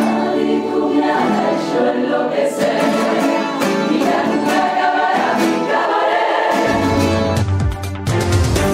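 A Cádiz carnival coro, a large choir, singing loudly in full harmony over strummed guitars. About seven seconds in, a deep bass comes in under the voices.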